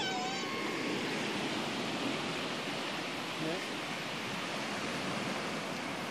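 Steady rush of sea surf breaking on a sandy beach, mixed with wind noise.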